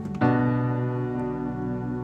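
Piano-voiced chord played on a MIDI keyboard through a software piano sound, struck a moment in and held so it rings on. It is part of a slow worship chord progression.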